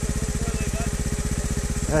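Trials motorcycle engine idling with a steady, rapid putter.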